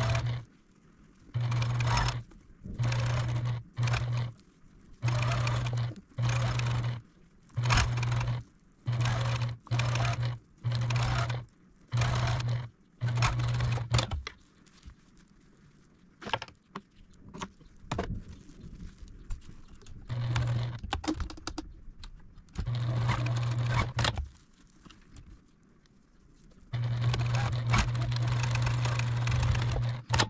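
Electric domestic sewing machine stitching binding onto a quilted potholder in short stop-start runs, about half a second to a second each, many in quick succession. After a quieter stretch with small handling clicks it runs a few more times, ending with a longer steady run of a few seconds near the end.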